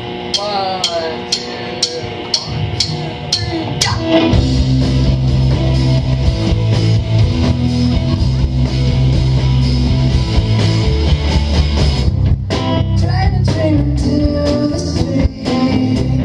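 Live indie rock band (electric guitar, bass and drum kit) starting a song. A guitar figure plays over steady ticks for about four seconds, then the bass and drums come in at full volume, with a brief break about twelve seconds in.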